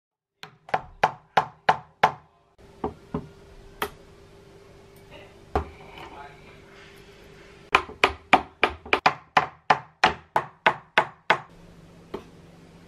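Sharp hammer knocks on the stapled edge of a wooden box, working the staples loose. There are six quick knocks, then a few spaced ones, then a fast run of about a dozen near the end.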